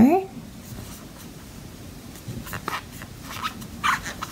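Soft, faint scratchy rustles of a metal crochet hook drawing acrylic yarn through stitches, a few short strokes in the second half.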